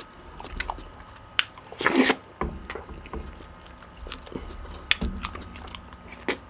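Close-miked mouth sounds of eating beef bone marrow with ogbono soup and pounded yam: chewing with scattered sharp wet clicks, and a louder noisy burst about two seconds in.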